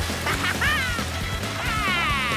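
Animated-cartoon background music with two short, nasal cries that fall in pitch, one about half a second in and one near the end, like a cartoon character's whoops.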